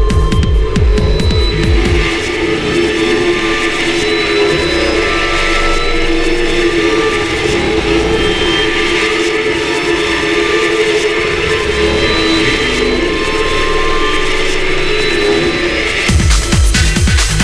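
Electronic techno track in a breakdown. The kick drum drops out about two seconds in, leaving sustained synth chords over a hiss, and the beat comes back in right at the end.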